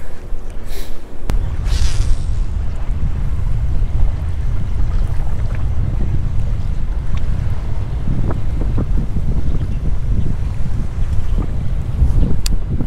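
Wind buffeting the microphone on open water: a steady, loud low rumble, with a few faint ticks near the middle.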